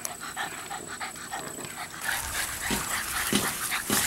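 English bulldog puppy panting in quick, even breaths. About halfway through, a louder rustling with a few low thumps comes in.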